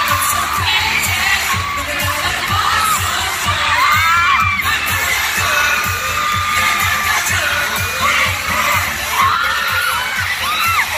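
Live K-pop dance track played loud through an arena sound system, with a steady beat, while the crowd screams and cheers over it.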